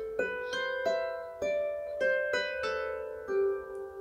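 Lever harp played by hand: a short melodic phrase of single plucked notes, about two a second, each left ringing into the next.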